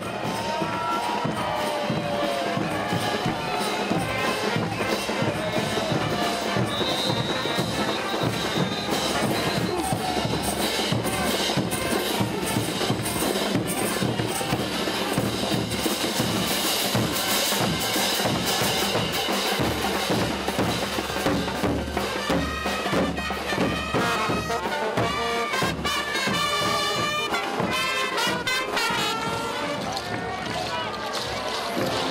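Brass band playing dance music: trumpets and other brass over a steady beat of bass drums and snare drums.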